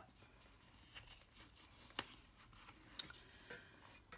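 Faint handling sounds as a leather strap is pulled free of its metal buckle and a waxed canvas flap is folded open: soft rustling with a few light clicks, the sharpest about two and three seconds in.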